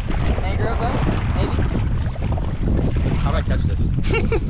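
Wind buffeting the microphone on an open boat at sea, a steady low rumble, with indistinct voices about a second in.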